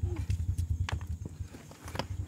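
Loose stones knocking and scuffing as a stone is picked up off rocky ground and carried off on foot: a few sharp, irregular clacks, the loudest about a second in, over a low steady rumble.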